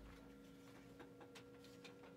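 Near silence: room tone with a faint steady hum and a scatter of faint, irregular ticks.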